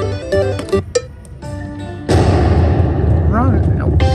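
Buffalo Link video slot machine game sounds: short electronic chimes and tones as the reels settle on a tiny win. About two seconds in, a much louder, noisy rushing sound cuts in and keeps going.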